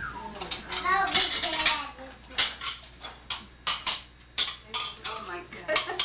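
Ceramic plates clinking and clattering as they are handled and stacked: a string of sharp knocks, roughly every half second, through the second half.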